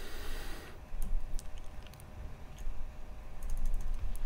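Light clicks from a computer keyboard and mouse at a desk: a couple of single clicks, then a quick run of clicks near the end as a document is scrolled down.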